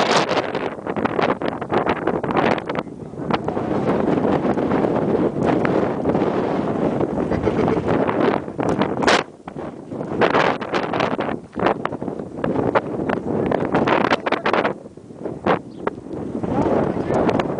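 Strong dust-storm wind buffeting the microphone: a loud, rough rushing broken by frequent sudden gusts, easing briefly about nine seconds in and again near the end.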